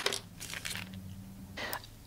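Faint crinkling and light clicks of a plastic tray of press-on nails being handled, slightly busier near the end.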